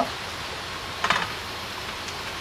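Barramundi fillet sizzling in hot vegetable oil in a frying pan: a steady hiss, with a brief louder burst about a second in.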